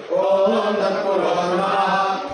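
Male priests chanting mantras together into microphones: a steady, pitched, sung chant that pauses for a breath at the start and then carries on.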